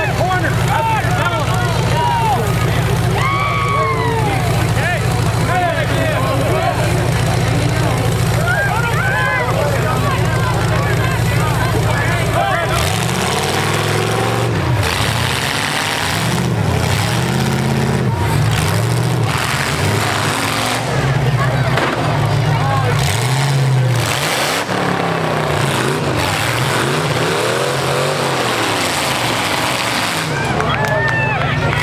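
Demolition derby trucks' engines running and revving. About halfway through, the engine pitch starts rising and falling over and over, with bursts of noise as the trucks push and spin their wheels.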